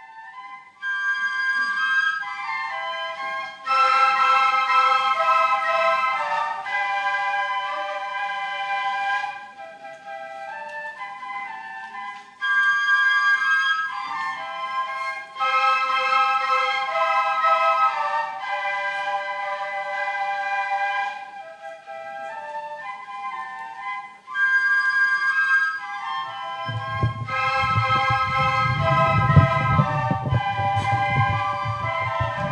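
Ensemble of small end-blown flutes playing a melody in several-part harmony, in phrases separated by short pauses. A low rumble joins under the music near the end.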